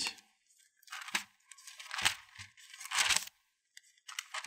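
Pages of a Bible being turned by hand while leafing to a passage: three short papery rustles about a second apart.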